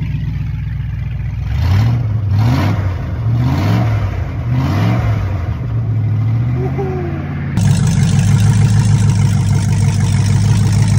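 Range Rover Classic's Rover V8 running with no exhaust fitted, idling and then blipped about five times, each rev rising and falling quickly, before settling back to a steady, louder idle near the end.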